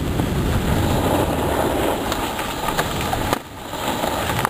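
Steady rough rushing and scraping of a snowboard sliding over rock-hard snow, mixed with wind buffeting the camera microphone. The noise drops away briefly about three and a half seconds in.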